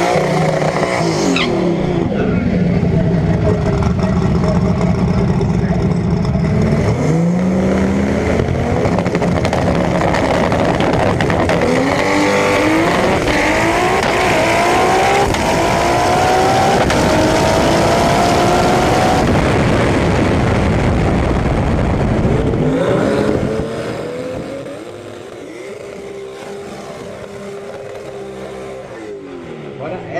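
Drag racing car's engine at full throttle, heard from an onboard camera, climbing in pitch through several gear changes. About 23 seconds in it drops to a lower, quieter note as the run ends.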